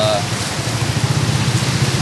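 A motorcycle engine passing on the road close by, a low fluttering rumble that grows louder from about half a second in, over steady outdoor hiss.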